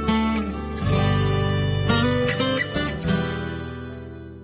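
Acoustic guitar music, strummed chords ringing on, fading out near the end.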